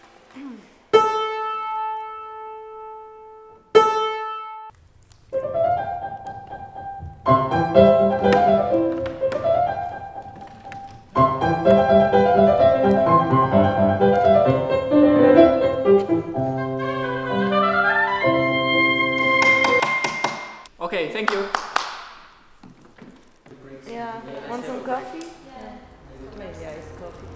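A grand piano strikes the same single note twice, each left to ring and fade. Then a woodwind melody with piano accompaniment plays a classical passage for about twelve seconds, ending in a rising run. Brief hand clapping follows.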